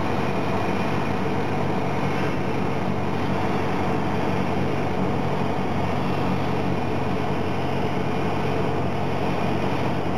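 Cessna 172SP's four-cylinder Lycoming engine and propeller droning steadily, heard from inside the cabin on final approach to a runway.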